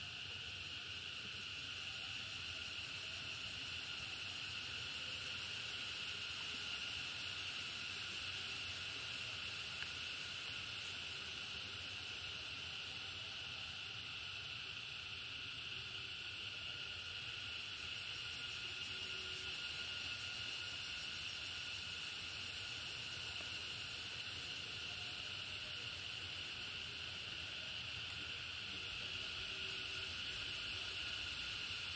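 A chorus of insects keeps up a steady, high-pitched shrill drone that neither rises nor falls.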